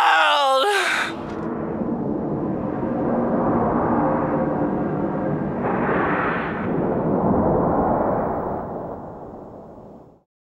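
A screamed vocal cuts off about a second in. A sustained, noisy wash from the song's ending follows, swelling about six seconds in and then fading out.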